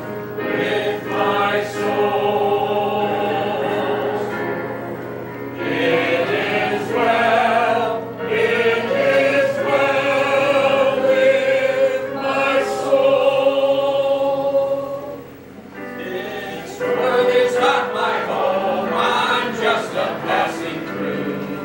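Several voices singing a slow song in unison with music, on long held notes, with a short break between phrases about three quarters of the way through.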